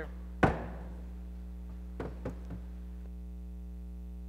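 A single sharp gavel strike, ringing briefly in the hall, marking the session's adjournment; a few much fainter knocks follow about two seconds later.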